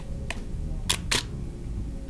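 DSLR shutter firing once for a test shot about a second in: two sharp clicks a quarter second apart as the mirror flips up and the shutter opens, then closes. Fainter clicks come just before, from handling the camera.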